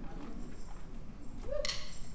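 A quiet pause on stage, then near the end a single sharp click: the first beat of a drummer's count-in before the band starts a song.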